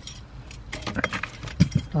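Car keys jangling on a lanyard hanging from the ignition: a scatter of light clinks and rattles.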